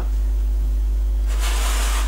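A steady low hum, with a short rustling hiss near the end.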